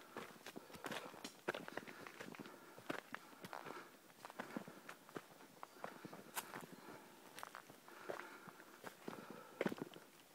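Footsteps of a hiker walking on a leaf-strewn dirt forest trail: an irregular run of soft crunches and sharp clicks.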